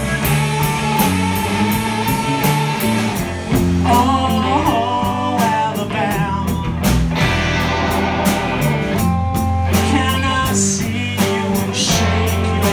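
Live rock band playing: electric guitars, electric bass and drum kit driving a steady beat, with singing over it.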